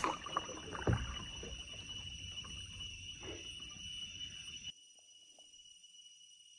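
Kayak paddle strokes in lake water, with a knock of the paddle about a second in, under a continuous high whistle of a few steady tones whose cause is unknown. The paddling noise stops abruptly near the end and the whistle carries on alone.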